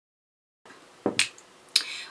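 Dead silence, then faint room tone with two sharp clicks close together about a second in and a softer click near the end.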